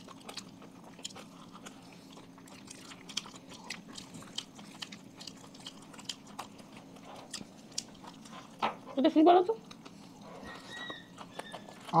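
Several people chewing pizza close to the microphone: a steady run of small wet mouth clicks and smacks, over a faint steady low hum. About nine seconds in, one of the eaters makes a brief voiced sound that rises and falls in pitch.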